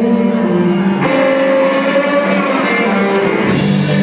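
Live rock band playing: guitars over a drum kit, with the room's echo, changing to a new chord about a second in.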